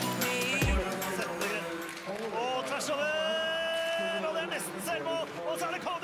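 Electronic dance music with heavy bass beats in the first second, giving way to ice hockey TV broadcast sound: a commentator's excited voice with one long drawn-out call about three seconds in.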